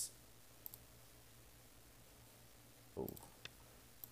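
A few faint computer mouse clicks over near silence: a light pair shortly after the start and a few more near the end.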